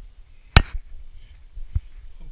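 Two knocks of the climber against the strangler fig's woody trunk and roots. The first, about half a second in, is sharp and loud; the second, near the end, is softer. A low rumble of handling noise runs beneath.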